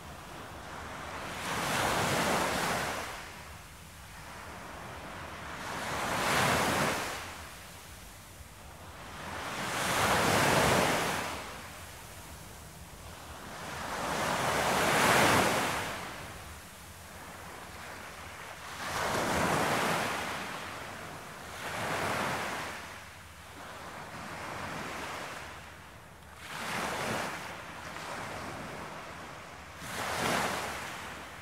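Ocean surf: waves breaking on a shore one after another, each swelling up and washing away every four to five seconds, with a low hiss of water between them.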